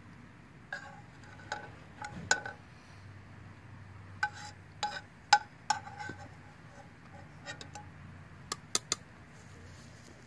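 Metal spatula clinking against a ceramic plate while fried fish is moved onto it: about a dozen sharp taps in uneven clusters, several ringing briefly.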